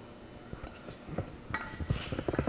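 Wooden spoon scraping and knocking against a stainless steel saucepan and a ceramic ramekin as cooked apple slices are spooned out. Scattered soft knocks start about half a second in and come thicker in the second half.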